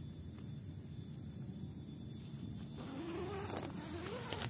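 A flying insect buzzing close by, over a low steady rumble. Its whine wavers and rises in pitch during the last second or so.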